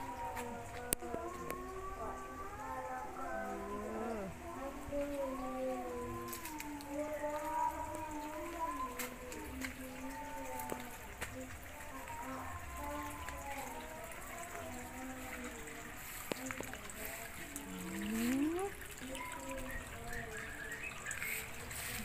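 Quiet music with a singing voice, the melody moving through long held notes that bend in pitch.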